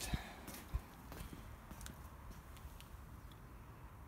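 A few faint, irregular footsteps on paving slabs over a quiet background.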